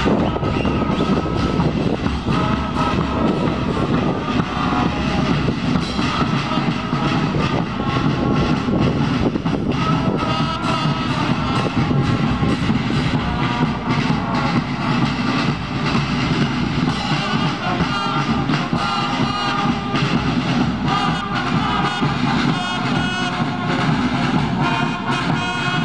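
Marching brass band playing: trombones and other brass carry held notes over drums and cymbals, with an even beat throughout.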